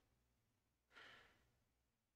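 Near silence, with one faint breathy exhale, a sigh or nose breath, about a second in.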